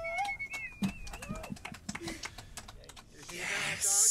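The tail of an acoustic band's song: a held note dies away just after the start, then scattered light clicks and taps. Near the end a voice rises into a whoop that breaks into a loud hiss lasting about a second.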